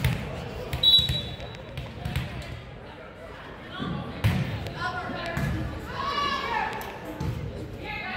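A volleyball bouncing on a hardwood gym floor, several separate thuds at uneven spacing, under the chatter of spectators and players in a large echoing gym.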